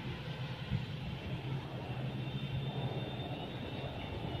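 A steady low drone with no distinct events, like distant engine noise.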